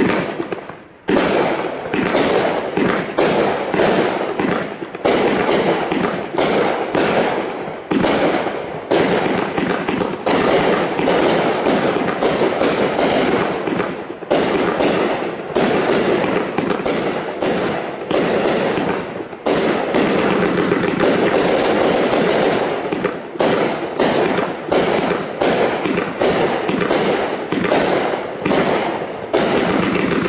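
An 80-shot firework cake firing: a steady string of shots and bursts, two or three a second, that keeps going without a break and is loud from about a second in.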